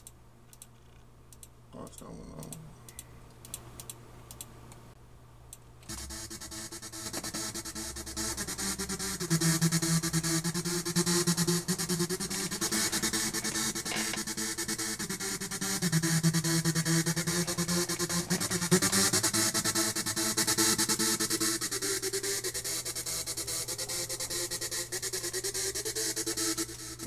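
Synthesizer pattern from an R&B-style beat in progress playing back from FL Studio: held synth chords over changing low bass notes, with a bright hiss on top. It comes in suddenly about six seconds in, after a few quiet clicks.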